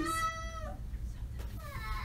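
A small child's high-pitched vocal squeal, held for under a second, followed by a shorter rising squeal near the end.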